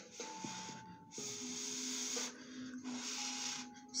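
A person blowing onto the black adhesive on a strip false eyelash in two long breaths, each about a second, to dry the glue until it is tacky.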